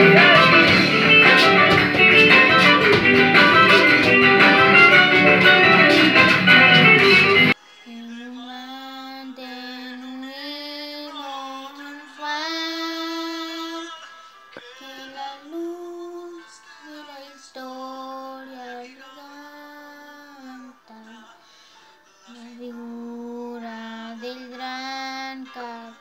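Loud recorded music with singing, cut off abruptly about seven seconds in. Then a girl sings alone, unaccompanied, in short phrases with brief pauses between them.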